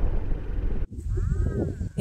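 Wind and engine noise from a BMW F700GS motorcycle riding slowly, cut off suddenly a little under a second in. After the cut, wind rumbles on the microphone and a woman makes one short vocal sound that rises and falls in pitch.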